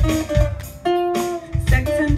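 Ukulele strummed in a rock rhythm with a drum kit playing along, its kick drum landing about four times. An instrumental stretch between sung lines, with one chord left ringing about a second in.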